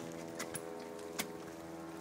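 Steady low hum with a few sharp clicks, the two clearest less than a second apart.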